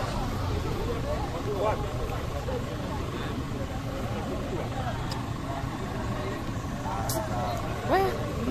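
Indistinct voices of people talking over the low, steady rumble of road traffic.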